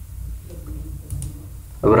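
A pause in speech filled by a steady low hum, with a few faint clicks about a second in; a man's voice starts again just before the end.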